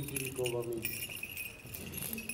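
Small bells on an Orthodox censer jingling as it is swung, over soft choral chanting.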